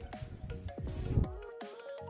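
Background music with steady held notes and repeated falling pitch sweeps, with a deeper hit a little past halfway.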